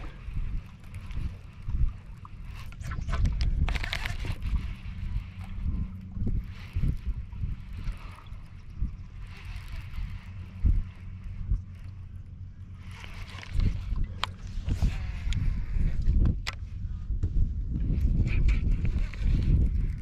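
Wind buffeting the camera microphone as a low rumble, with water lapping and sloshing against a boat hull and a few short clicks, and faint voices in the background.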